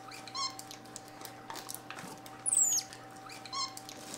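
Pet capuchin monkeys giving high-pitched squeaks. There is a quick warbling trill near the start and again near the end, and a single falling squeak a little past halfway, the loudest sound of the moment. A plastic bag rustles faintly underneath.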